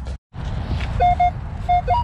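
Metal detector giving short target beeps as its coil sweeps over leaf litter: a few brief mid-pitched tones in the second half, the last one higher, over rustling and handling noise.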